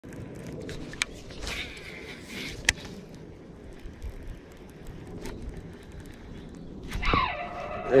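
Baitcasting reel being cranked on a spinnerbait retrieve over steady faint background noise, with two sharp clicks in the first three seconds. A man starts speaking near the end.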